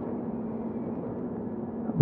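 Steady background room noise with a faint, even low hum; no other sound stands out.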